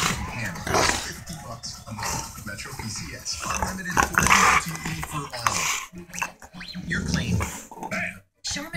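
A Labrador–pit bull mix dog growling in several bouts while tugging and guarding a chew bone in play as someone tries to take it.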